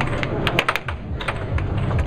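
Air hockey puck and mallets clacking hard against each other and the table's rails, a quick run of sharp clacks about half a second in and a few more near the end, over the steady low hum of the table's air blower.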